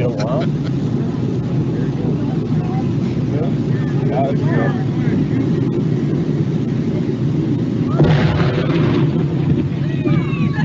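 Archival news-film sound played back through a hall's speakers: a steady windy rumble with faint voices of onlookers, then about eight seconds in a half ton of dynamite goes off under a dead gray whale's carcass as a sudden burst of noise that lasts about a second.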